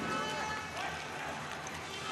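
Ice arena ambience during a sled hockey game: indistinct voices over a steady background of arena noise.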